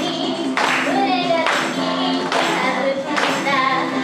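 Female J-pop idol group singing an upbeat song into microphones over a backing track with a steady beat.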